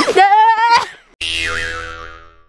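A child's drawn-out vocal sound that rises in pitch, then a little over a second in a comic sound effect added in editing, a ringing pitched tone that bends and fades out over about a second.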